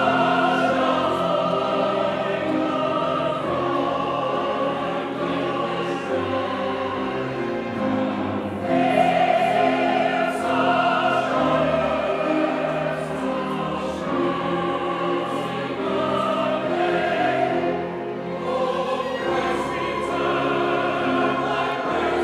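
Large church choir singing in sustained, held chords, accompanied by an orchestra.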